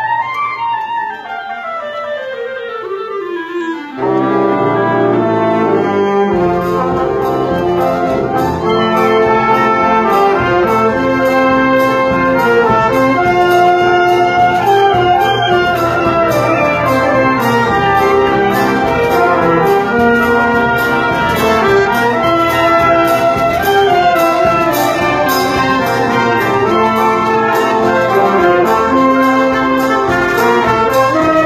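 Brass band of trumpets, trombones and other brass playing a symphonic march. It opens with a falling run over the first few seconds, then the full band comes in louder at about four seconds, with a regular beat of percussion strokes.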